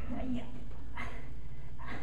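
A few brief, indistinct vocal sounds from a person, short murmurs rather than clear words, over steady room noise.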